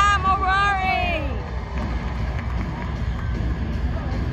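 An arena PA announcer's long, drawn-out call for about the first second, over a steady low rumble of arena music and crowd.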